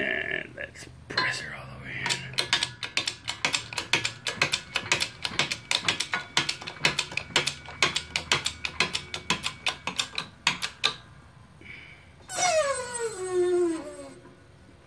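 Rapid metallic ratchet-like clicking, about five clicks a second, lasting about ten seconds and then stopping. Near the end a squeal falls steadily in pitch.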